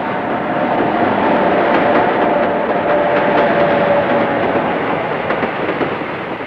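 Passenger train running on the rails: a steady rumble with faint clicks of the wheels over the rail joints, and a steady whining tone through most of it that stops shortly before the end.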